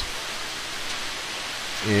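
A steady, even hiss with no distinct knocks or scrapes.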